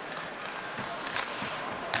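Steady arena crowd murmur during a live ice hockey game, with a few sharp clacks from sticks and the puck on the ice.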